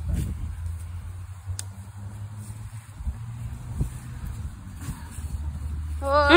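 Steady low outdoor rumble, with a couple of faint clicks.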